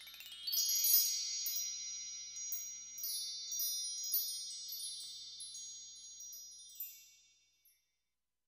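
Shimmering chime sound effect: a quick rising sweep of bell-like tones, then a cluster of high metallic tinkles ringing on together and slowly fading away near the end.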